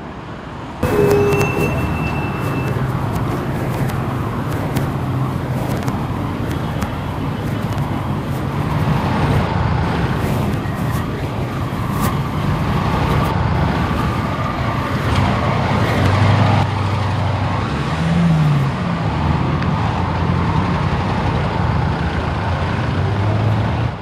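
Busy city road traffic: cars and minibuses driving past, with the steady noise of engines and tyres. Later on, one engine revs up and falls back briefly.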